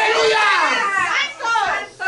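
A high-pitched voice calling out in quick rising and falling bursts, without recognizable words.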